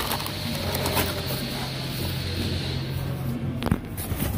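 A cardboard rotor box being opened and handled, its flaps scraping with a few sharp clicks, over a steady low hum.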